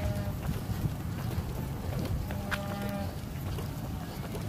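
Rumbling wind and handling noise from a phone carried by a running person, with scattered light knocks. A short held, pitched tone sounds right at the start and again a little past halfway.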